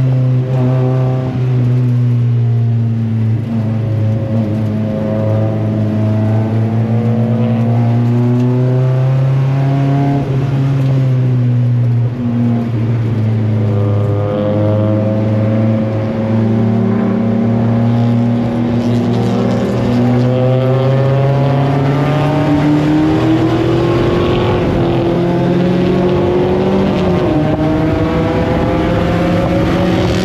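Mazda Miata race car's four-cylinder engine heard from inside the cockpit under racing load. The engine note climbs and falls again and again with throttle and gear changes, with a sharp drop in pitch near the end.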